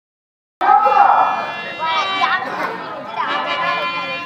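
A stage performer's loud voice in theatrical declamation, its pitch sliding up and down, over a steady held harmonium note. It starts abruptly about half a second in.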